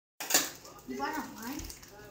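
A short knock right as the recording begins, then a voice saying "Mine."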